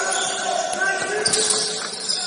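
Basketball game on a wooden indoor court: players' voices calling out over the thud of the ball bouncing, with a few sharp shoe squeaks or knocks in the middle, all echoing in a large sports hall.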